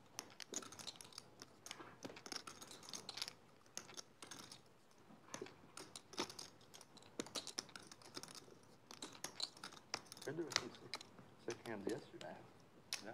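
Poker chips clicking and clacking in irregular runs as players handle and riffle their stacks at the table. A brief voice comes in near the end.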